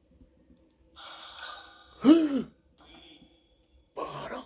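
Spirit box scanning radio frequencies: a stretch of hiss with thin tones about a second in, then one short voice-like fragment about two seconds in, over a faint steady hum.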